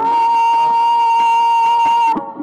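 Qawwali singing: a voice holds one long, high note, steady in pitch and loud.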